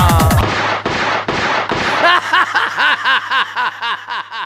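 Haryanvi dance-song playback cuts off about half a second in. A rapid run of sharp shot-like bangs follows, about four a second, then a string of short rising-and-falling chirps that fade out, all edited-in sound effects.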